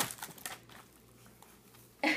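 Brief rustling and crinkling of packaging as a child pulls items from a wicker Easter basket, mostly in the first half second, then quiet.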